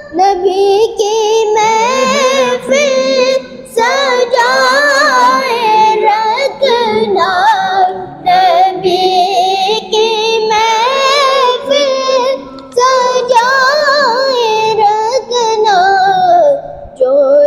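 A boy singing a naat (Urdu devotional poem) solo, with no instruments, in long wavering, ornamented phrases with short breaks for breath.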